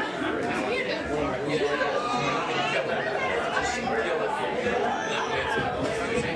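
Many people talking at once: overlapping, indistinct chatter with no single voice standing out.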